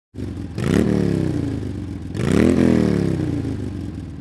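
Motorcycle engine revved twice, each rev climbing quickly and then falling slowly back, the second coming about a second and a half after the first.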